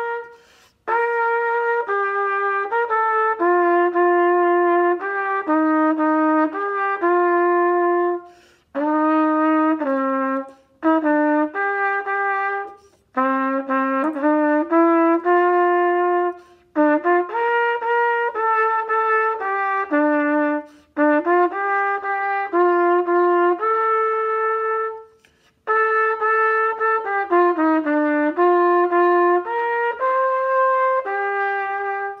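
Solo trumpet playing a song melody, phrase by phrase, with short pauses for breath between the phrases.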